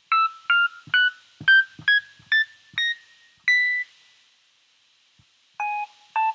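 GarageBand's Classic Electric Piano sound playing from a laptop, triggered note by note from an Adafruit UNTZtrument MIDI button pad. About nine single notes come in quick succession, each a step higher than the last, and the last is held a little longer. After a pause, a lower note starts near the end, and faint low thumps sound with several of the notes.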